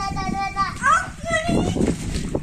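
Children shrieking at play: one long, high held squeal that breaks off under a second in, followed by short rising cries.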